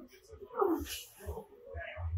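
A man grunting and exhaling hard with strain, a long falling grunt with breath noise about half a second in and a shorter one near the end, as he presses a pair of 110 lb dumbbells through a heavy rep.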